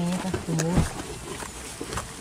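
Two short, low-pitched vocal sounds, the second about half a second after the first, followed by a sharp knock just under a second in, which is the loudest sound.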